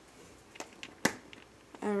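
Hard plastic clicks of a Lego minifigure being handled and set down on a Lego baseplate: a few light clicks, then one sharp click about a second in.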